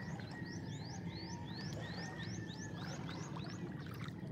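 A bird calling a quick run of short rising whistles, about four a second, stopping shortly before the end. Under it, small waves wash steadily over a stony shore.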